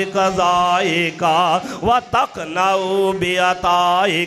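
A man chanting an Arabic supplication (dua) in a melodic, drawn-out recitation, its notes long-held and wavering, in phrases with short breaths between.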